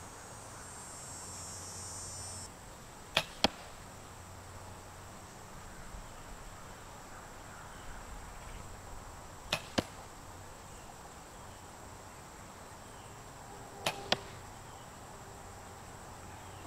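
Compound bow shot three times, a few seconds apart. Each shot is a sharp snap of the string's release followed about a quarter of a second later by the smack of the arrow striking a foam target 20 yards off.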